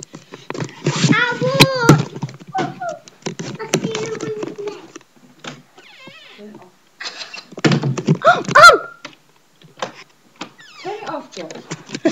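Children's wordless cries and squeals, including a loud rising squeal about eight and a half seconds in, mixed with scattered knocks and bumps.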